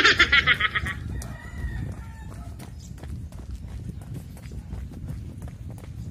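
A rooster crowing: a loud call in the first second that trails off into a thinner held note by about two and a half seconds. Faint regular footfalls of a jogger run beneath it.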